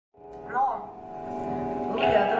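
Amplified band holding a sustained chord that fades in from silence, with a short voice sound about half a second in.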